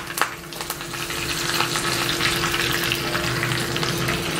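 Curry leaves sizzling in hot oil in a small tempering pan, with a couple of sharp crackles right at the start and the hiss building over the first second or two, then holding steady.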